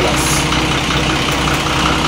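A double-decker bus's diesel engine idling steadily, heard from inside the driver's cab as a constant low hum.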